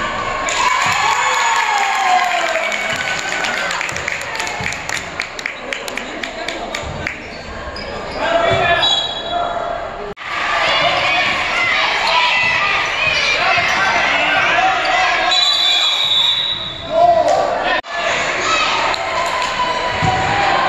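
A basketball bouncing on a hardwood gym floor during play, the impacts echoing in a large gym. Voices of players and spectators run through it.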